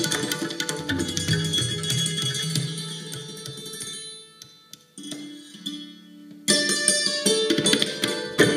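Live Indian classical music: santoor with tabla and hand-drum percussion. The playing fades almost to nothing about halfway through, leaving a few soft held notes. Then the full ensemble comes back in loudly and suddenly about a second and a half before the end.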